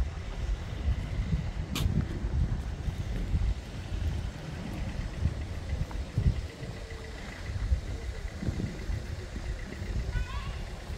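Wind buffeting the microphone outdoors: a low, uneven rumble that gusts up and down, with one sharp click about two seconds in.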